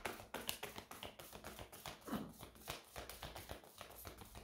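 A deck of tarot cards being shuffled by hand: a quick, faint run of soft card clicks.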